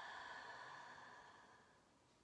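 A soft, faint, drawn-out exhale through the mouth, like a sigh, fading away over about two seconds as she rests hanging in a forward fold.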